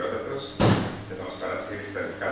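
A single loud thump about half a second in, with low voices around it.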